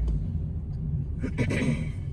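Steady low road and engine rumble inside the cabin of a 2020 Toyota Corolla LE on the move, with a short cough about a second and a half in.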